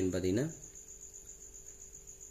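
Speech that stops about half a second in, leaving a faint, steady high-pitched whine over a low hum.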